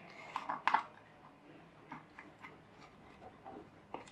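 Light plastic clicks and ticks as a bamboo skewer is worked through holes in a plastic bottle's neck. Two or three sharper clicks come in the first second, then fainter scattered ticks.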